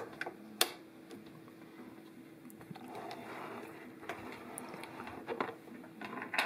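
Snap-lock transducer plug latching into its port on an electronics control box: a couple of sharp plastic clicks in the first second, the loudest about half a second in. Then softer handling knocks and rustle as the box is moved, with a few light clicks near the end, over a faint steady hum.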